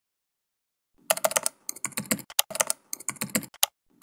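Typing on a computer keyboard: quick, irregular runs of key clicks beginning about a second in.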